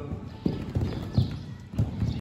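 Hoofbeats of a horse cantering on the sand footing of an indoor arena, passing close by over a low jump: a string of dull, uneven thuds, the loudest a little after a second in.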